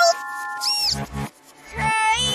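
Cartoon soundtrack: music with a held chord, a short squeaky rise-and-fall sound effect just before the middle, then a character's voice near the end.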